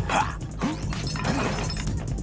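A shattering, crashing sound effect with background music.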